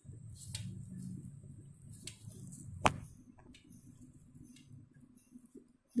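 Faint handling sounds as hibiscus petals are pulled off the flower by hand, with one sharp click about three seconds in.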